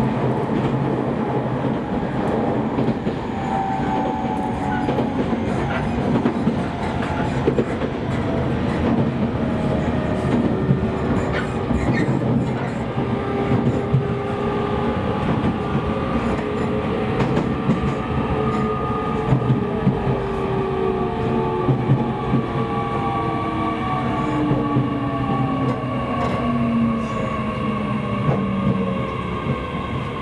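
E501-series electric train heard inside the carriage, running with steady wheel-on-rail noise and occasional rail-joint clicks. From about ten seconds in, the traction motors' whine falls steadily in pitch in several tones as the train slows for the next station.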